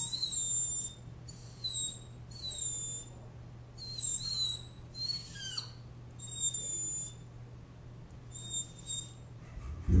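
Small terriers whining in short, high-pitched calls with bending pitch, about seven of them spaced irregularly, while they watch something out a window.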